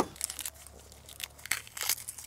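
Shell of a hard-boiled egg cracking and being peeled off by gloved fingers: a string of small, crisp crackles that bunch up in the second half.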